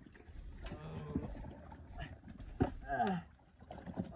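A man's wordless vocal sounds: a short low hum about a second in, then a groan falling in pitch about three seconds in as he lifts a heavy basin. A couple of sharp knocks in between.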